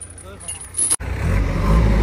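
A heavy steel tow chain clinking as it is handled. About a second in, the loud, steady low rumble of a JCB backhoe loader's diesel engine takes over as it digs.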